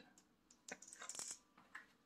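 Near silence with a few faint clicks and a brief light rattle about a second in.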